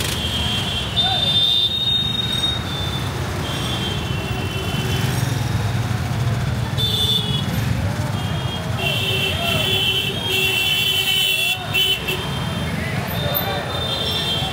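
Busy street traffic with vehicle horns from scooters, motorbikes and cars honking again and again, several overlapping in a long stretch past the middle. Under them run a steady rumble of engines and the voices of a dense crowd.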